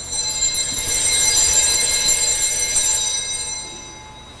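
Altar bells rung at the consecration of the Mass: a cluster of high, bright tones that starts suddenly, shimmers and fades away near the end.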